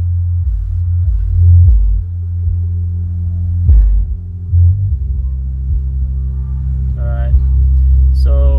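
Car subwoofer playing music loudly through a PPI Art Series A600 amplifier with its gain turned up; it comes through as heavy, pulsing bass, since the signal is taken from an equalizer's sub output and the amp has no crossover.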